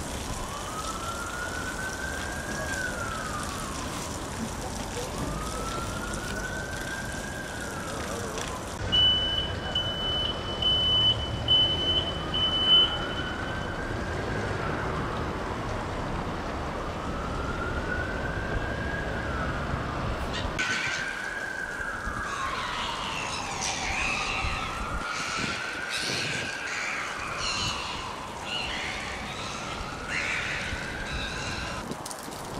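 An emergency vehicle siren wailing in a slow, repeating rise and fall, about one cycle every four seconds. About nine seconds in, a high steady tone sounds for about four seconds.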